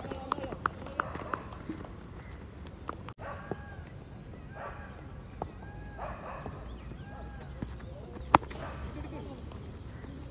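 Open-air ambience of a cricket ground with faint distant voices and scattered light clicks. Near the end comes one loud, sharp knock: a cricket bat striking the ball.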